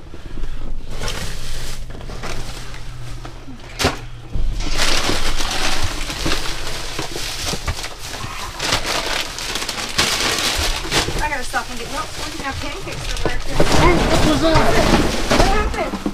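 Plastic trash bags and cardboard boxes rustling and crinkling as hands dig through a dumpster full of discarded groceries. There is a sharp knock about four seconds in.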